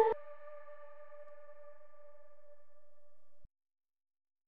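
The song's final electronic chord held on alone after the rest of the future bass mix drops out: a soft, steady tone of a few sustained notes that cuts off abruptly about three and a half seconds in.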